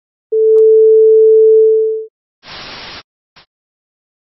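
A single steady electronic beep tone held for nearly two seconds, fading out at the end, followed by half a second of static-like hiss and a very short blip of hiss.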